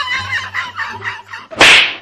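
Background music with high singing, broken off about one and a half seconds in by a loud, short swishing whoosh sound effect.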